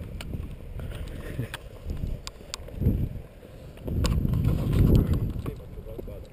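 Low rumble of air and handling noise on the plane-mounted GoPro's microphone as the foam plane is held and turned by hand, with scattered small clicks and knocks; the rumble swells about four seconds in and eases again near the end.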